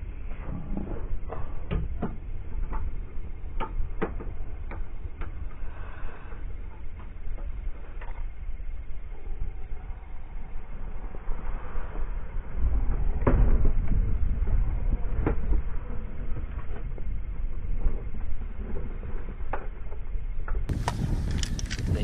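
Wind rumbling on the camera microphone, louder in a gust about thirteen seconds in, with scattered sharp knocks and taps.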